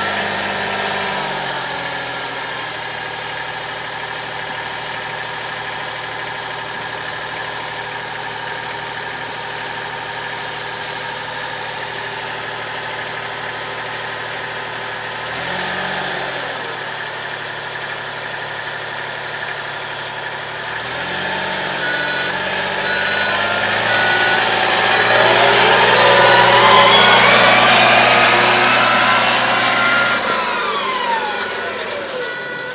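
Compact wheel loader's diesel engine idling steadily, revving briefly a couple of times. Over the last few seconds it revs up louder with a rising whine as the loader works its bale grab and drives off.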